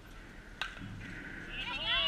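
A single sharp crack of a bat hitting a softball about half a second in, followed near the end by a loud, high-pitched human shout.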